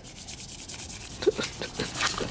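Soft, steady rubbing and rustling noise, with a brief short vocal sound about a second and a quarter in.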